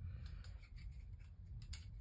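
Faint handling noise: a few light clicks and rubs as a PEX-pipe fishing stringer with braided line is handled, over a low steady rumble.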